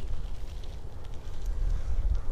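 Wind buffeting the microphone: an uneven low rumble with a faint hiss over it.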